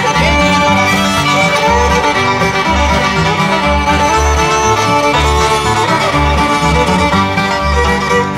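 Old-time string band playing an instrumental break between verses: fiddle over banjo and guitar, with a steady bass beat.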